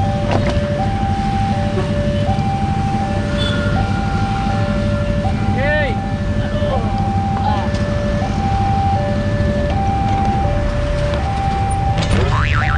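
Railway level-crossing warning alarm sounding a steady two-tone signal, a lower and a higher tone alternating about every three quarters of a second, warning of an approaching train. Underneath runs the low rumble of idling motorcycles and traffic waiting at the crossing.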